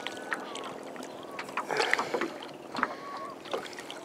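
Water splashing and sloshing around a plastic kayak and its paddle as it moves over rippled lake water, with a few louder irregular splashes.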